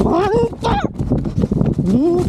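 A high-pitched voice laughing in two short squeals, then rustling and crunching in dry leaves and brush before the voice starts up again at the end.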